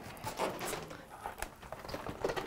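Faint handling noise: light clicks and rustling from a foam model plane being turned over by hand, with a faint breath or murmur about half a second in.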